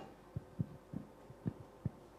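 About five soft, irregularly spaced low thumps, like knocks or handling noise on a table near the microphone.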